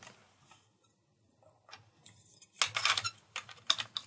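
Hard plastic parts of a Nerf Barricade blaster clicking and knocking as a shell piece is fitted on by hand: a couple of faint ticks, then a quick cluster of louder clicks in the last second and a half.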